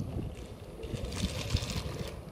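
A small die-cast toy engine pushed by hand along wooden track, its wheels giving an uneven low rumble and clatter on the wood that grows a little noisier about a second in.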